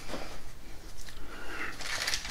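Faint handling noises as hands move over a felt-covered table, with a soft plastic rustle toward the end.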